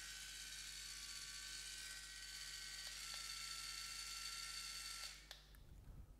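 Cordless electric callus remover (Caresmith Bloom) running freely, its small motor spinning the roller head with a faint, steady whine. Its tone shifts slightly about halfway through, and it switches off about five seconds in.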